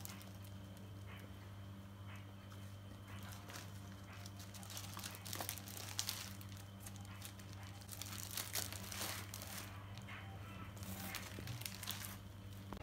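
Paper pages in clear plastic punched sleeves crinkling and rustling as a handmade book is held up and its pages handled, with scattered sharp crackles, over a faint low steady hum.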